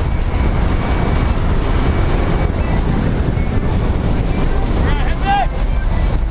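Loud, steady rush of wind and aircraft engine noise through the open door of a jump plane at altitude.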